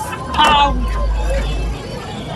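Background hubbub of an outdoor market over a steady low rumble, with a brief snatch of a distant voice about half a second in.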